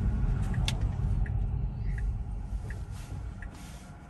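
Tesla turn-signal indicator ticking steadily, about once every 0.7 s, over low cabin road rumble that fades as the car slows almost to a stop.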